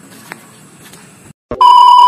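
A loud electronic bleep, one steady high tone like a censor bleep, cuts in about one and a half seconds in after a moment of dead silence. Before it there is only faint background with a small click.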